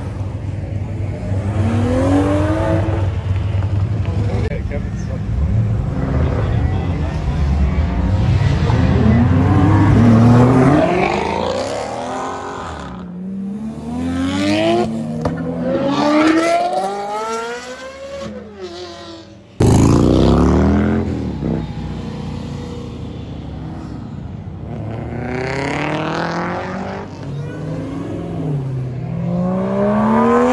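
Performance car engines revving and accelerating hard as cars pull out, pitch climbing and dropping repeatedly through gear changes. A steady low engine hum comes first, and the sound jumps abruptly about two-thirds through.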